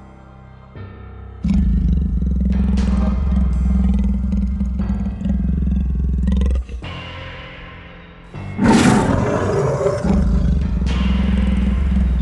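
Ominous film-score music with a heavy low drone, and near the end a loud, roughly one-second monster roar sound effect.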